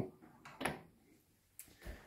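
Handling noise in a quiet room: one light click about a third of the way in, then a couple of faint low knocks near the end.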